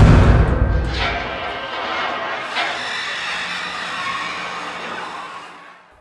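Horror film soundtrack: a deep boom at the start rings out, then a sustained, tense music drone holds and gradually fades away near the end.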